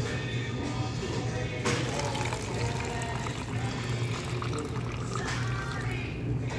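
Water running from the metal spigot of a glass drink dispenser into a plastic cup, starting about two seconds in, over background music.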